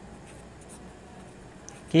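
Pen writing on paper: faint scratching in short strokes as a word is written out by hand.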